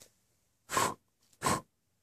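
A person blowing out a candle with two short puffs of breath, the first a little under a second in and the second about half a second later.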